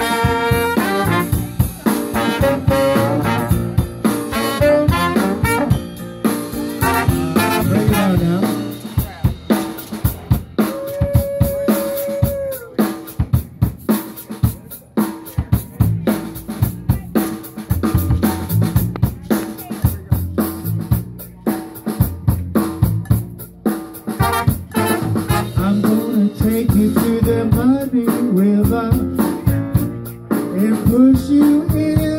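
Live band playing an instrumental break: saxophone, trombone and trumpet over upright bass and drums, with one long held horn note. Then comes a stretch carried mostly by the drum kit, snare and rimshots, before the horns come back in near the end.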